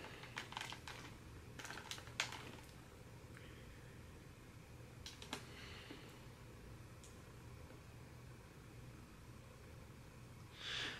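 Faint handling noise from a foil-covered cardboard box: several light clicks and rustles in the first two or three seconds and one more click about five seconds in, over quiet room tone with a low hum.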